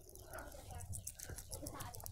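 Faint scattered clicks and soft rubbing as hands push and twist an orange mesh-and-marble fidget tube.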